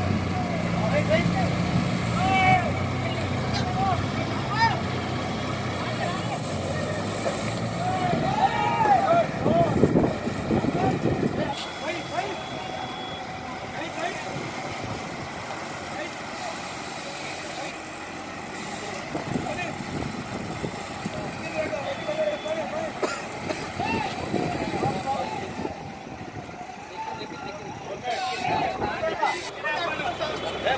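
A heavy vehicle's engine running steadily at idle, fading out after about ten seconds, with people talking and calling out in the background throughout.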